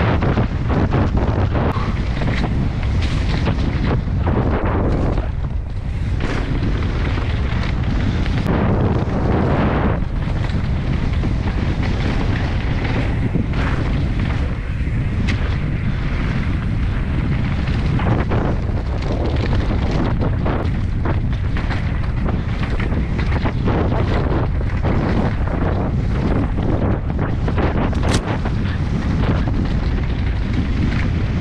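Wind buffeting the microphone of a camera carried on a downhill mountain bike at speed, with frequent knocks and rattles from the bike over rough ground.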